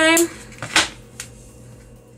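Scissors handled over a burlap ribbon: one short clack about three-quarters of a second in, then a fainter tick, over a low steady hum.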